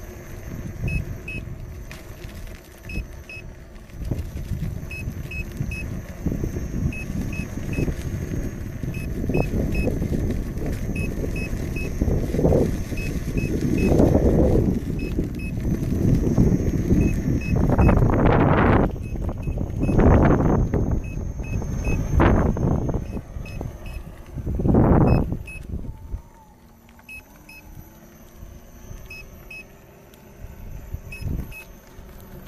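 Wind buffeting the microphone of a camera riding along on an electric unicycle, in gusty swells that are strongest in the second half and die down near the end. Faint short double beeps repeat steadily underneath.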